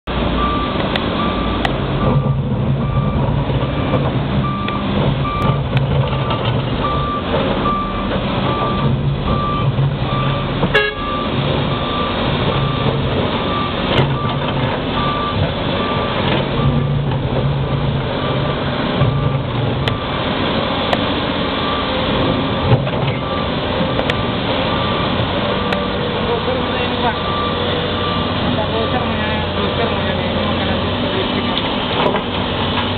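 Caterpillar 329D hydraulic excavator's diesel engine running and labouring in surges as it digs and loads rock. A backup alarm beeps about twice a second, breaking off for several seconds in the middle.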